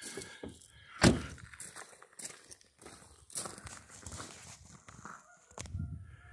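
A single sharp thump about a second in, then faint scattered knocks and rustling.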